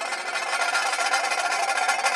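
Pipa played with a continuous rapid tremolo across the strings, the notes blurring into one dense, unbroken wash of sound rather than separate plucks.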